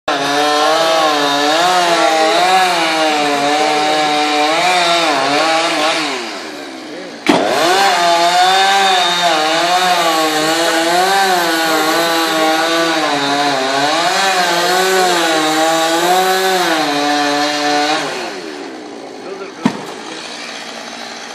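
Two-stroke chainsaw running at full throttle as it cuts into a palm trunk, its pitch wavering as the chain bites. It drops to idle about six seconds in, comes back to full revs with a sharp knock about a second later, and falls back to idle near the end.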